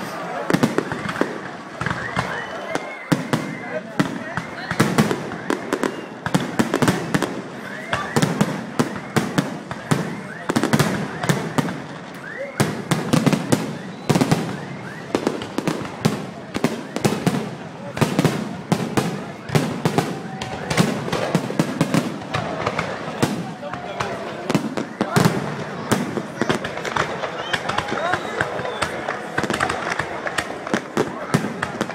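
Fireworks display: a continuous, rapid run of bangs and crackles, many a second, from shells and ground fountains going off.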